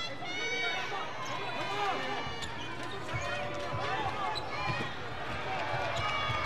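Basketball arena sound during live play: many crowd voices and shouts, a basketball bouncing on the hardwood court, and short high squeaks from players' shoes.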